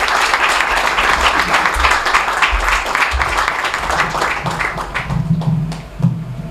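An audience applauding: dense clapping that thins out about five seconds in.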